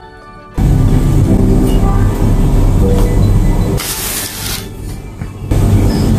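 A metal bench scraper being pressed repeatedly through a sheet of dough onto a wooden board, heard as a loud, dense rumbling clatter. It starts about half a second in and cuts off abruptly at the end, over background music.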